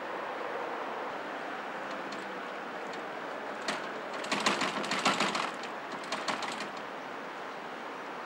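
A glass entrance door shaken by its handle, making quick metallic rattling clicks in a main burst about four seconds in and a shorter one about six seconds in, over a steady background hiss.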